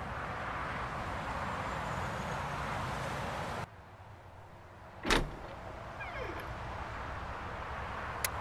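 A steady hiss of background ambience that cuts off suddenly just before halfway, then a brief loud whoosh with a falling pitch about five seconds in, after which the ambience returns.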